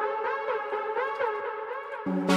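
Electronic music playing back: a synth lead melody with repeated swooping pitch glides over faint ticking percussion.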